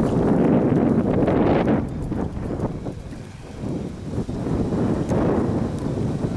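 Wind buffeting the microphone, heaviest in the first two seconds and easing about three seconds in, with a horse's hoofbeats at the canter on turf.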